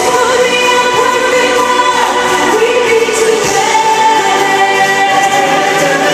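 Live pop concert music, loud and full, with long held sung notes over the band, heard in a large arena.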